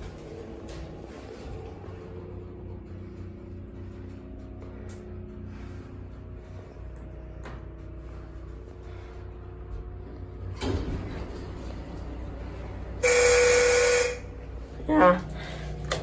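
Schindler elevator car running with a steady low hum. Near the end its buzzer sounds loudly for about a second, one steady tone with a harsh edge.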